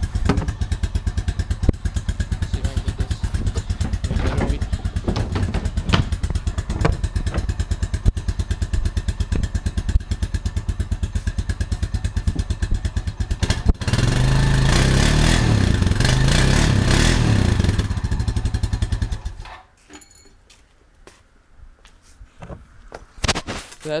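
Honda Rancher 350's single-cylinder four-stroke engine idling with a steady, even thump through its stock exhaust, shortly after a cold start. About fourteen seconds in it is revved up and held louder for about five seconds, then it is shut off.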